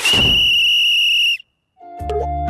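A whistle blown in one long steady high blast as a time-up signal, starting with a short hit and cutting off sharply after about a second and a half.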